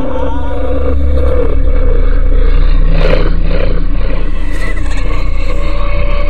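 Dark ambient outro soundtrack: a loud, deep rumbling drone with faint shifting tones above it.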